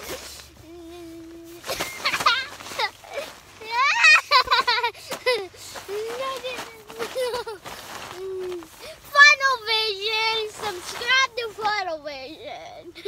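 Children's high-pitched voices vocalizing without clear words, in squeals and sing-song sounds whose pitch wavers up and down, as they play.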